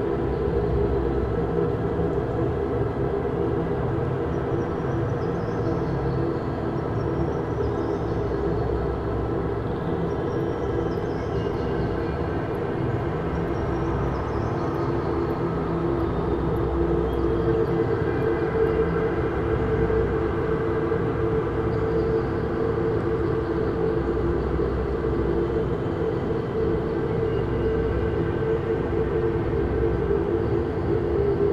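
Dark ambient drone music: a dense, steady drone held on sustained low tones, with faint high wavering tones drifting over it.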